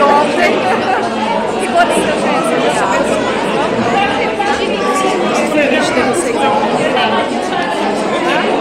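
Chatter: several people talking at once in a large hall, with voices close to the microphone over a general hubbub of the crowd.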